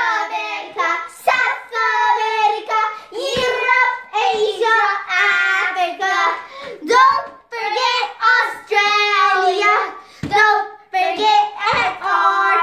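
Young children singing a song that names the continents one by one, in short sung phrases with brief breaths between.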